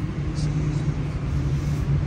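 Steady low rumble with a faint hum, like nearby traffic or an engine running.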